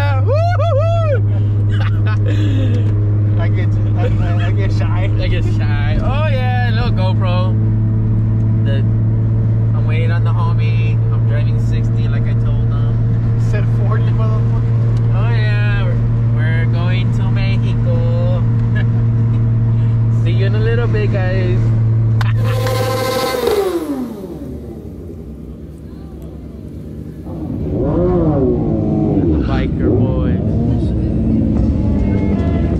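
A car's steady engine and road drone heard from inside the cabin at a constant cruising speed, with voices over it. About three-quarters of the way through, a brief loud rush with a falling pitch ends the drone, and the sound goes quieter.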